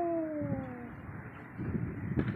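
A woman's long, drawn-out moaning "ooh", rising slightly and then falling in pitch before it fades about a second in.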